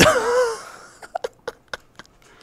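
Germ-X hand sanitizer squirted from its bottle in a sudden burst that sprays everywhere, with a short wavering squeal over it, fading within about half a second. A few faint small clicks follow.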